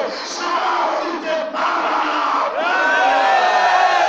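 A man's voice shouting through a public-address microphone, then a crowd of men calling out together in long voices that glide up and down, louder over the second half.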